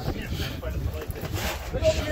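Steady low rumble of wind buffeting the phone's microphone on an open boat deck, with faint voices in the background.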